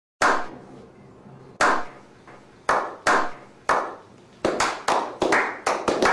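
A slow clap by a small group: single hand claps about a second and a half apart at first, speeding up and thickening into quicker overlapping claps as more hands join in.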